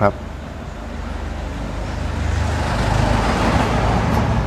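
A steady rushing noise over a low hum, growing gradually louder through the second half.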